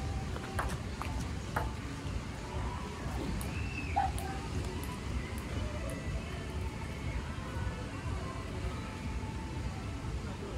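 Table tennis ball clicking off the bats and table a couple of times in the first two seconds as a rally ends, then a steady low rumble of wind on the microphone.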